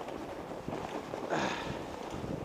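Fat-tire ebike riding over packed snow: a steady rough noise of the tyres and wind on the microphone.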